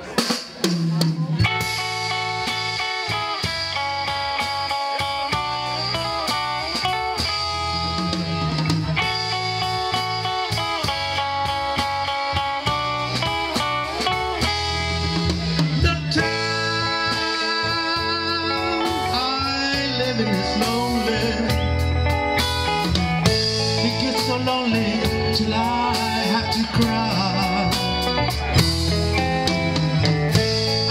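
A live band playing a 1960s pop song on a Yamaha MO8 keyboard and a drum kit. It starts with a sharp hit and settles into a steady groove about a second in.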